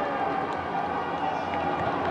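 Shouts of players on the pitch ringing around an empty football stadium during a goalmouth attack, over steady pitch-side ambience.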